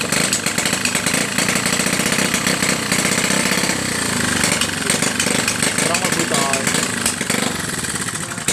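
A motorcycle-type small engine running close by, a loud, rapid, even pulsing that dips briefly near the end.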